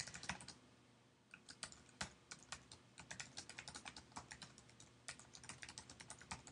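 Faint typing on a computer keyboard: a few keystrokes, a pause of about a second, then a steady run of quick, irregular key clicks as a sentence is typed.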